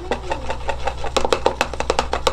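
Glass labware clinking: a small glass vessel and stirring tool tapping and scraping against a glass beaker while a hyaluronic acid gel is mixed, a quick, uneven run of sharp clicks, roughly ten a second, each with a brief ring.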